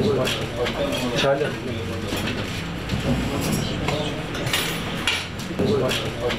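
Indistinct voices in a room, with short clinks of dishes and cutlery, mostly in the middle stretch.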